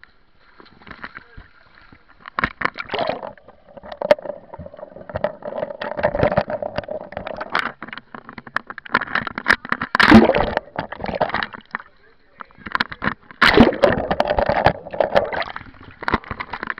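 Pool water splashing and sloshing against a waterproof action camera at the surface, with many sharp clicks and spatters. People's voices call out over it, loudest in bursts a little past the middle and again near the end.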